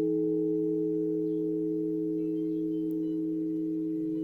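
Sustained meditation tones: several steady low pitches ringing together and slowly fading.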